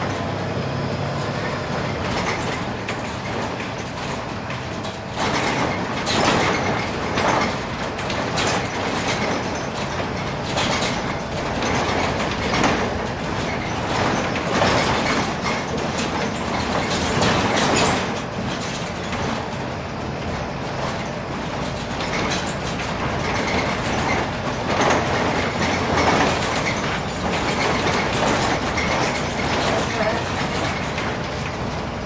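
Inside a Volvo 7000 low-floor city bus on the move: steady engine and road noise with frequent knocks and rattles from the body and fittings, swelling louder every second or two.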